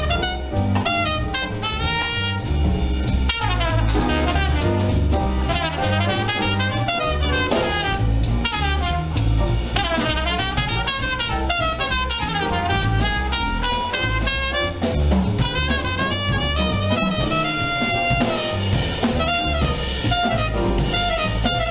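Small jazz band playing live: a trumpet plays a flowing melody over upright double bass, drum kit and piano.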